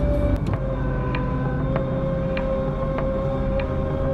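A steady droning tone with a sharp tick repeating about every 0.6 seconds, like a slow clock, set under it.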